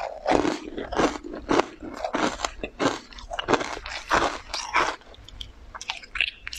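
Close-miked chewing of a green-powder-coated cake, mouthful after mouthful at about two chews a second, easing off near the end.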